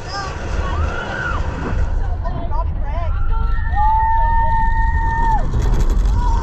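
Roller coaster train cresting the lift hill and diving into its first drop, with deep wind and track rumble building as it speeds up. Riders whoop in short cries, then let out one long held scream about four seconds in.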